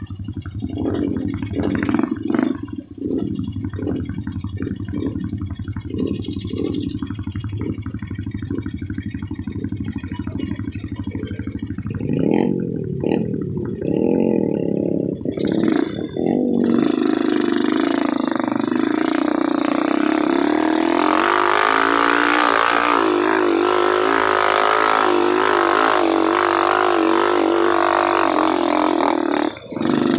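Dirt bike engine heard close up from its own handlebars, running at low revs with a pulsing hum. From a little past the middle it turns louder and higher in pitch, with the revs wavering as the bike is ridden.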